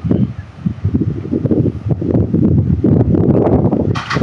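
Wind buffeting a phone's microphone: an irregular, gusting low rumble that grows stronger in the second half.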